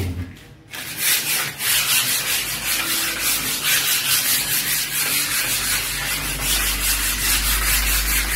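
Sandpaper being rubbed by hand along a wooden door frame, in quick, regular back-and-forth strokes of about three a second. The sanding starts about a second in.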